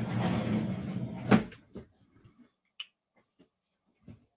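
A second or so of muffled handling noise ending in one sharp click, followed by a few faint clicks.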